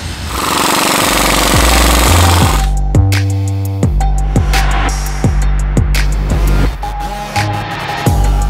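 Impact wrench running in a rapid rattle for about two seconds, fitting the crank balancer onto the LT5 engine. Then background music with a steady bass-drum beat takes over.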